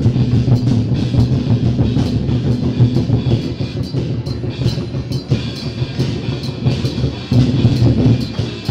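Loud drum-led music, with percussion hits coming thick and fast over a steady low rumble.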